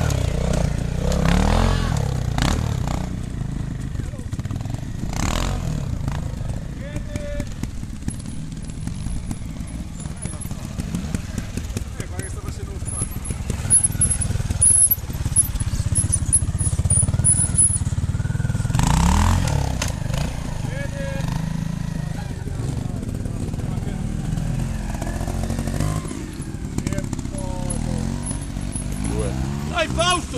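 Trials motorcycle engine running at low revs throughout, with short throttle blips that rise and fall in pitch at the start, about a second and a half in, and again near the middle.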